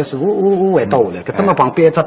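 A man talking rapidly in Shanghainese, with a drawn-out vocal sound about half a second in.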